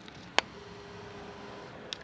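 A single sharp click about half a second in, over low room tone. A faint steady hum follows it for about a second.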